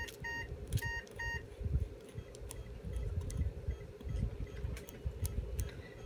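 A few short electronic beeps, in quick pairs during the first second and a half, over a steady low hum. Then faint scattered ticks from a hand sickle scaler scraping tartar off a dog's teeth.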